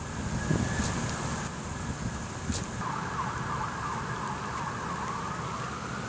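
Outdoor street ambience with low rumble and a steady high hiss, and a faint wavering tone that rises in pitch near the end.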